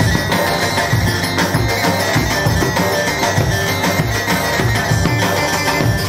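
Loud band music for dancing: a plucked string lead over a steady drum beat.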